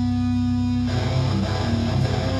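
A hardcore punk band playing live, loud electric guitar to the fore. A single held guitar note rings steadily, then about a second in the guitars break into a fast-changing riff.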